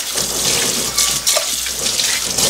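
Kitchen tap running into a stainless steel saucepan as it is rinsed out, the water splashing off the pan into a stainless steel sink and drain in a steady rush.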